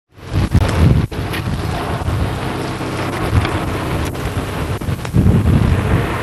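Wind buffeting a camcorder's built-in microphone: a steady rushing noise with low rumbling gusts near the start and again near the end, briefly cutting out about a second in.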